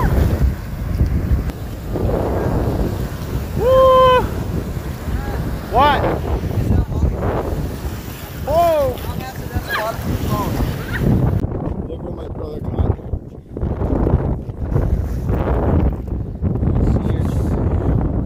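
Ocean surf washing and breaking in the shallows, with wind buffeting the microphone. A few short shouts rise above it in the first half, and from about eleven seconds in the sound turns duller and more muffled.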